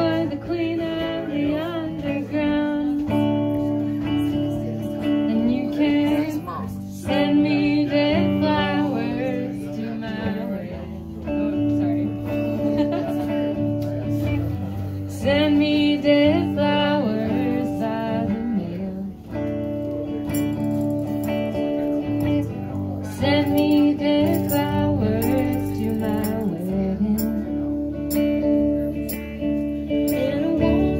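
A woman singing and playing a semi-hollow electric guitar live, the guitar chords running on steadily while the voice comes in phrases with short breaks between them.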